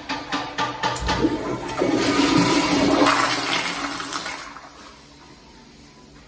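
Kohler Highcrest toilet flushed by its chrome flushometer valve: a loud rush of water that builds over the first two seconds, is strongest for about a second and a half, then dies away about five seconds in.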